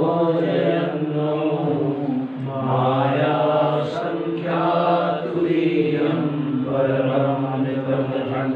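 A man chanting Sanskrit verses in a slow, melodic recitation, holding long notes on a near-steady pitch.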